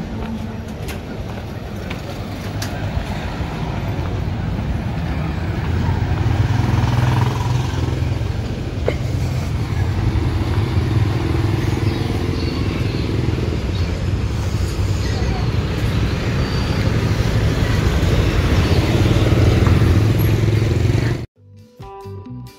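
Busy street-market ambience with motor scooters running past and a steady low rumble, louder from about a quarter of the way in. It cuts off suddenly just before the end, where guitar music starts.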